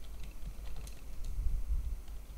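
Typing on a computer keyboard: irregular light key clicks while a file path is typed into a code editor, over a low background hum that swells briefly past the middle.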